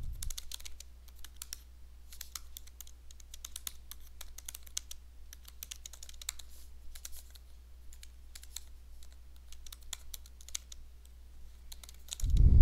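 Typing on a computer keyboard: irregular runs of quick, light key clicks, with a steady low hum underneath.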